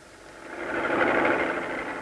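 Steady machinery noise, faded up over about half a second and then held at an even level.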